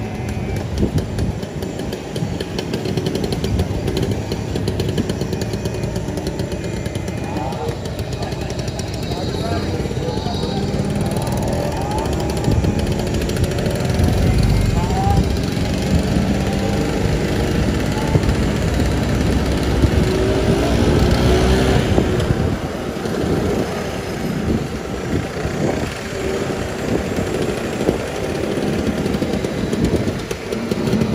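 Wind and road noise from a moving scooter, with the motors of nearby scooters and traffic, and muffled voices.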